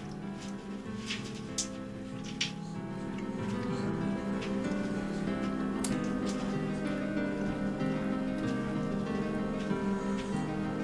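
Background instrumental music with plucked guitar, with a few light clicks in the first few seconds.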